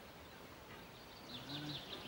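Faint background hiss, then about a second and a half in a quick run of faint, short, falling bird chirps, with a brief faint low hum beneath them.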